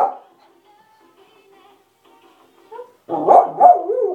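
A dog barking, two loud barks about three seconds in during excited tug play.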